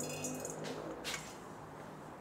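Stainless steel mixing bowl being handled, ringing faintly at the start, then a couple of soft knocks.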